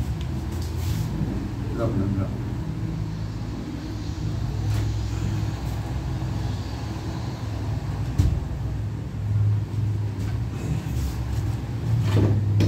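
A steady low mechanical hum with faint voices, and one sharp knock about eight seconds in.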